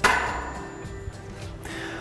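A mallet strikes the drive-side crank arm once, driving the Race Face Cinch crank fully onto its 30 mm spindle. The knock rings on and fades over about a second and a half.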